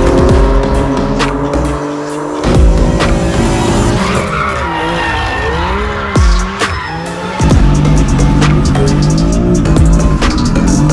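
BMW M4 drifting, its rear tyres squealing with a wavering pitch as they spin, mixed under loud music with a steady beat that changes about seven seconds in.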